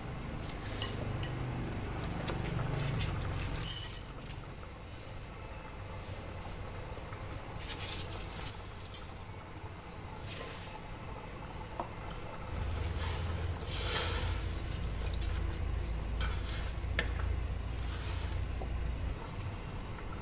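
Scattered clinks and light scrapes on a stainless steel pot of boiling rice and pandan water. A low steady rumble runs through the second half.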